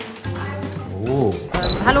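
Background music with a voice, then about one and a half seconds in, a short high electronic beep and a rain-and-thunder sound effect (heavy rain with a low rumble) come in suddenly.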